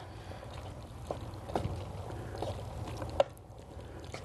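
Wooden spatula stirring chicken in a cornstarch-thickened sauce in a pan: a steady wet stirring noise with a few light knocks of the spatula against the pan, the sharpest a little past three seconds.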